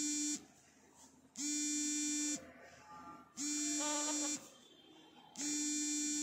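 An electronic buzzer beeping in a regular pattern: a steady buzzy tone about a second long, then a second of quiet. Three full beeps plus the end of an earlier one.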